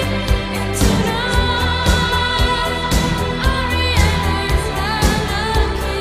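Italo-disco dance track with an electronic drum beat of about two beats a second, a sustained synth bass and a sung vocal line.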